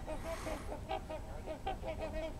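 Trumpeter swans calling to each other: a quick run of short, faint honks, the calling that goes with their head-bobbing before takeoff.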